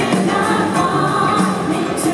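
Live band playing with backing singers holding a sustained sung harmony over guitars and keyboards, a concert recorded from the audience.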